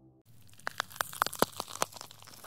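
Crackling glitch sound effect: a rapid, irregular run of sharp clicks and crackles over a faint low hum, starting about a quarter-second in.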